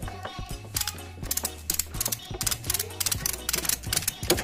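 Ratchet tie-down strap being cranked tight: quick, uneven runs of sharp metallic clicks from the ratchet's pawl.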